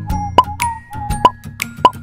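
Playful intro jingle: a thin, high melody over a bouncy bass line, punctuated by cartoon pop sound effects about every half second.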